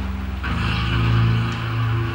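Background music score of sustained low synthesizer chords, moving to a new, brighter chord about half a second in.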